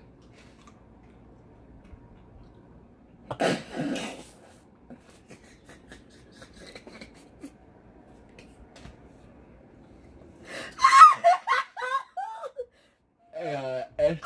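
A sudden loud burst of breath, like a sneeze, about three seconds in. Near the end, a loud vocal outburst with laughter, its pitch swooping up and down, cut off briefly, then more laughing voices.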